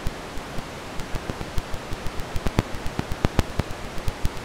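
Steady hiss with irregular crackling clicks and pops, a few each second, like old-record or film crackle.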